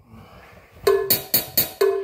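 Fast count-in clicks at about four beats a second (250 beats per minute), starting about a second in, with a lower-pitched accented click on each first beat of the bar. The count-in leads into a trumpet play-along.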